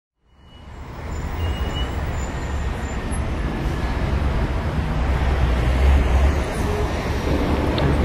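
Steady low rumble and road noise of a moving vehicle, fading in over the first second.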